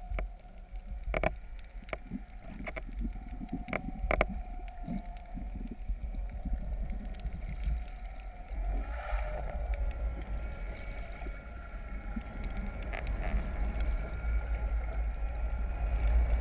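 Heard underwater, a steady low rumble of water rushing past a towed camera, with the tow boat's motor coming through the water as a steady whine of several tones. A few sharp clicks sound in the first few seconds.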